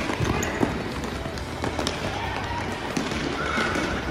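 Children's futsal game in a large covered hall: running footsteps and scattered light ball touches over a steady wash of court noise, with faint children's voices near the end.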